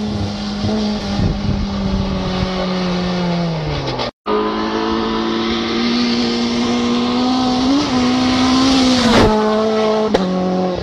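Rally car engines at high revs on a gravel stage. The first car's note falls away as it drives off, then cuts off suddenly about four seconds in. Another car's engine then holds a steady note and passes close near the end, with a sharp drop in pitch.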